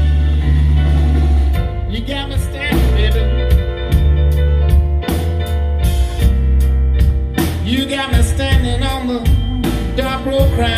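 Live blues band playing a slow blues number: drum kit and a heavy electric bass under guitar and piano, with a wavering lead line on top.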